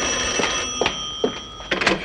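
An old rotary desk telephone's bell rings in one long ring that stops near the end as the handset is lifted off its cradle with a short clatter. A few footsteps sound during the ring.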